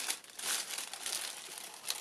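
Sheets of tissue paper crinkling and rustling as they are picked up and handled, louder about half a second in and again near the end.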